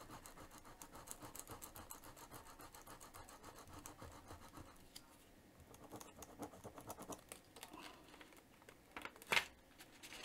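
Faint, rapid scratching strokes of an applicator rubbed back and forth over a plastic letter stencil on a textured canvas, pausing briefly around the middle, with one sharper click near the end.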